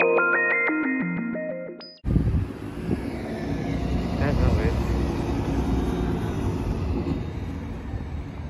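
A synthesizer intro jingle of stepped electronic notes fades out over the first two seconds. After a sudden cut comes steady outdoor bus-loop ambience: the low rumble of a city bus engine and traffic.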